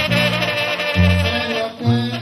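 Live Sinaloan banda music: a brass band with sousaphone holding long low notes, and a man singing into a microphone over it.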